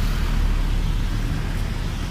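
Street traffic going by: a truck, cars and motorcycles making a steady low rumble.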